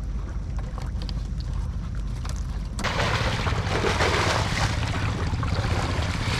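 A low steady rumble with small splashes and clicks, then about three seconds in a sudden switch to loud rushing and splashing water with wind on the microphone, as a plastic crate of fish is dipped and water pours through it.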